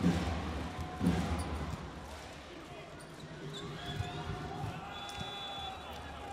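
A volleyball struck hard on the serve, then a second ball contact about a second later, over the steady noise of an arena crowd.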